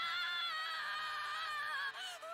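An anime character's high-pitched wailing cry, held and wavering slightly, heard faintly; it breaks off just before the end.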